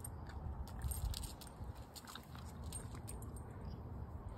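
A small dog moving about, its collar tag jingling in light, scattered clicks over a low rumble on the microphone.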